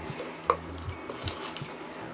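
Handling of an add-on wide-angle lens being fitted to a compact camera right at its microphone: a sharp click about half a second in, then several lighter clicks and taps.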